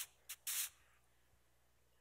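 Three short hissing rustles from a clip-on microphone being handled, all within the first second, followed by near silence.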